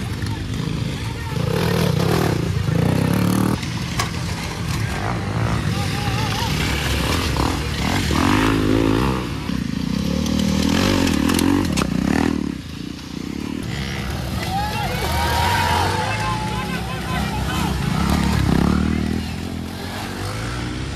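Off-road motorcycle engines revving up and down in repeated bursts as the bikes crawl and climb over a rocky obstacle section, with people's voices mixed in.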